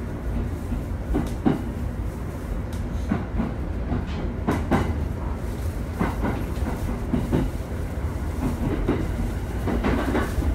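Inside a running electric commuter train car: a steady low rumble of the car under way, with irregularly spaced clacks of the wheels passing over the rails.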